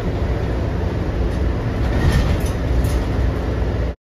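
Steady low rumble of a city transit bus running, heard inside the passenger cabin: engine and road noise. It stops abruptly at the very end.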